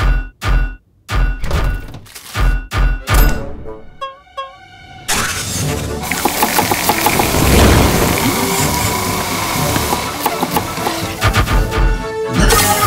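Cartoon soundtrack: music punctuated by a quick run of sharp thunks over the first four seconds, then from about five seconds a loud, dense stretch of busy music and rapid knocking effects.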